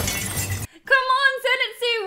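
A crashing, shattering sound effect from an anime film's soundtrack that cuts off suddenly after about half a second, followed by a high-pitched voice shouting.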